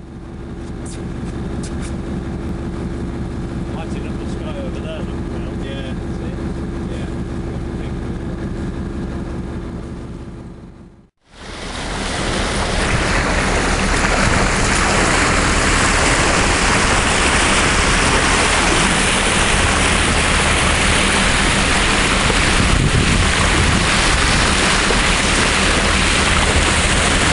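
For about the first eleven seconds, a boat's engine running at a steady pitch under the water noise. It cuts off suddenly, and the rest is loud wind buffeting the microphone over water rushing past the hull of a yacht under sail.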